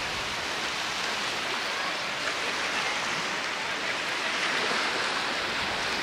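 Small waves washing in over a shallow sandy shore, a steady even rush of surf with no breaks or crashes.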